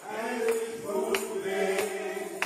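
A group of men singing gospel in harmony on long held notes, with a few sharp hand claps.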